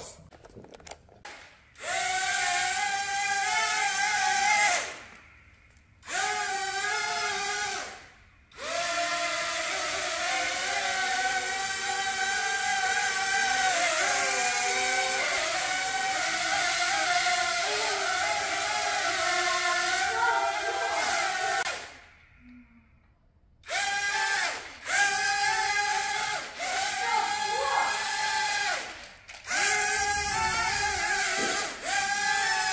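Small electric motors of a toy drone-car whining, with the pitch wavering up and down as the throttle changes. The whine cuts out and restarts three times.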